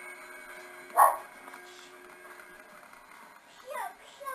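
A dog barks once, loudly and briefly, about a second in, and gives a shorter falling call near the end, over a faint steady hum.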